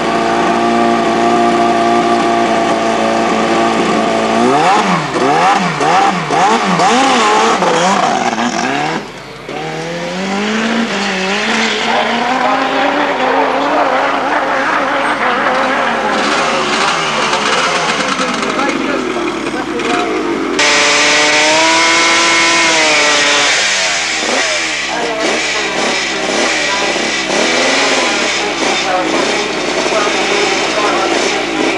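Drag-racing motorcycle engines. One is held at steady revs, then revved up and down repeatedly for a launch. After an abrupt break, another engine note climbs and falls, and a second abrupt change brings a further run with the revs rising and dropping again.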